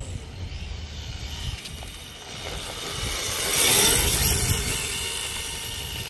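Electric RC drift car (Yokomo YD2 chassis) running on concrete: a thin motor whine over tyre hiss, growing louder as it comes close about three to four seconds in, then easing off.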